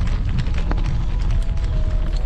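Mountain bike riding over a gravel and leaf-strewn trail: steady wind rumble on the bike-mounted microphone, with a run of clicks and rattles from the tyres and bike over the rough surface.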